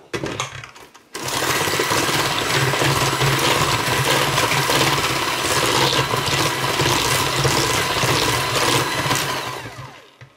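KitchenAid electric hand mixer beating an egg into creamed shortening and sugar in a steel bowl. It switches on about a second in, runs at a steady loud hum, and winds down just before the end.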